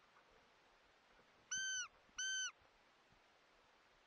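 Two short, high-pitched calls of steady pitch, about half a second apart, each dipping slightly at its end.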